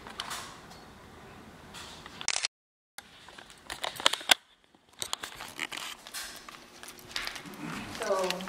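Scattered clicks, scrapes and rustling of handling and movement, with the sound cutting out completely for a moment about two and a half seconds in.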